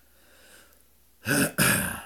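A person clearing their throat: two short, harsh bursts close together, starting about a second in.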